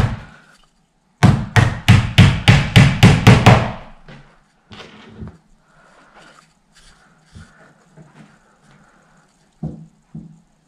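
A claw hammer driving a small nail through a metal fitting into the corner of a flat-pack wooden panel: about ten quick taps, roughly four a second, starting about a second in. Faint handling and shuffling noises follow.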